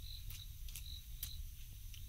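Insect chirping: a short, high chirp repeating about twice a second, with a few faint clicks.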